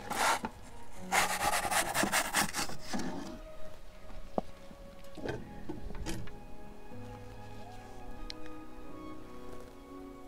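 Wooden pizza peel scraping and rasping against the oven's stone floor as a pizza is jiggled off it: a sharp scrape at the start, then a quick run of rapid scraping strokes for about two seconds, followed by a few single sharp knocks. Soft background music runs underneath.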